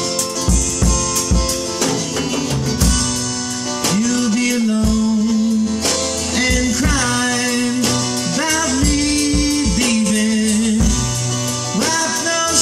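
Acoustic guitar and drum kit playing an instrumental break between verses, the kick drum thumping steadily under the strummed chords. A sustained lead melody holds long notes over them and bends up in pitch about halfway through.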